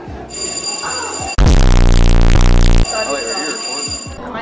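A sound effect edited into the vlog: high steady ringing tones, with about a second and a half of a very loud, distorted buzzing blast in the middle that cuts off suddenly.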